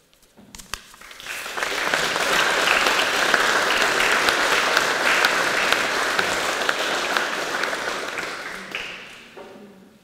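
Audience applause that builds over the first two seconds, holds steady, then dies away near the end.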